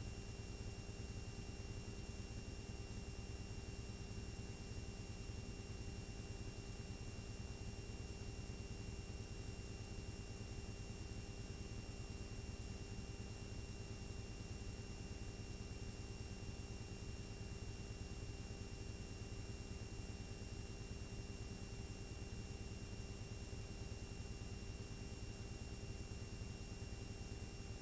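Steady hiss and low hum of blank videotape playing after the recording has stopped, with a few faint steady tones.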